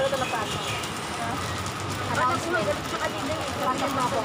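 Indistinct chatter of several people talking, with a steady crackling background noise underneath.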